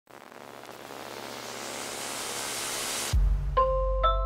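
Logo-intro sound effect: a rising whoosh of noise swells for about three seconds and cuts off into a deep boom, followed half a second later by a ringing chime note.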